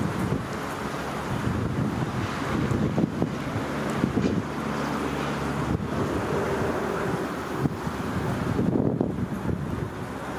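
Wind buffeting the microphone: an uneven, gusting rumble with no distinct events.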